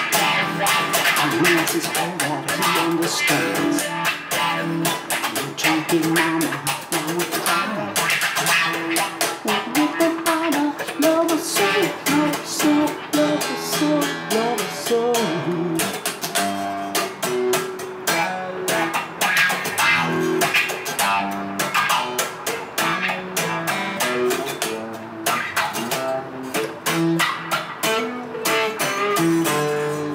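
A man singing a song while playing an electric guitar, with quick picked and strummed notes.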